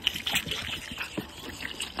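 Two lambs sucking milk from plastic bottles through rubber teats: irregular, wet sucking sounds.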